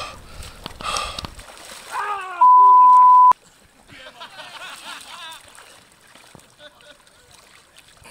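A man gasping and panting hard from the shock of icy water, with sharp breaths about once a second at the start. Then a loud steady beep, a censor bleep laid over a voice, lasts about a second and cuts off suddenly, followed by quieter voices.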